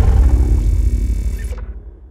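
The deep rumbling tail of a logo-intro sound effect, fading out over about a second and a half.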